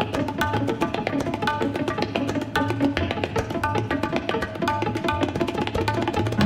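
Tabla played in a fast, even rhythmic pattern. Quick ringing strokes on the treble drum sound over deep booming strokes on the bass drum.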